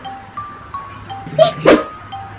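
Light background music with a repeating chiming melody, and about one and a half seconds in a dog barking twice, loud and short.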